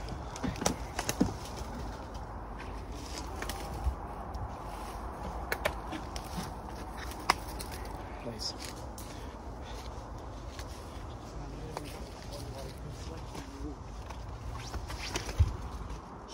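Footsteps through dry leaves and undergrowth, with scattered sharp cracks of twigs breaking underfoot over a steady rustle of clothing and phone-handling noise.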